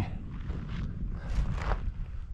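Wind rumbling on the camera microphone, with a few faint short rustles or steps over it.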